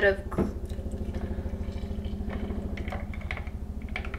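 A steady low machine hum with a rapid, even pulse, like a household appliance motor running, under the quieter sound of milk being poured from a plastic gallon jug into a glass jar.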